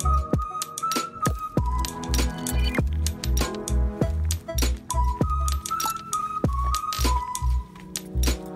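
Background music with a steady beat of about two bass thumps a second, sharp clicking percussion and a held, high melody line that steps between a few notes.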